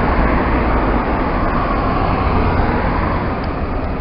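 Road traffic noise from a passing motor vehicle: a steady rushing with a low rumble that eases off slightly toward the end.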